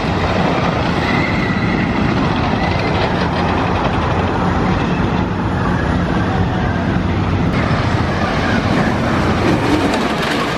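Great Coasters International wooden roller coaster train running over its wooden track, a loud, continuous sound.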